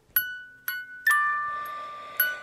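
A short bell-like chime jingle: three struck notes, the third a two-note chord that rings on and slowly fades.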